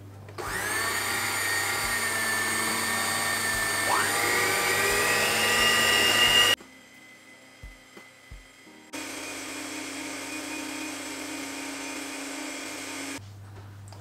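Breville stand mixer motor running, its beater creaming butter, sugar and vanilla in a steel bowl: a steady whine that climbs in pitch about four seconds in, then stops abruptly. About two seconds later it runs again, more quietly, until near the end.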